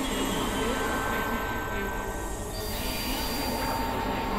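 Experimental electronic noise music: a dense droning wash over a low rumble, with steady squealing high tones held above it. About two and a half seconds in, the upper layer shifts and a new, higher steady tone takes over.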